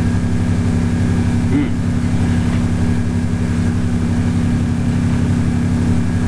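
A steady mechanical hum with several fixed low pitches and a fast, even pulse, holding at one level throughout.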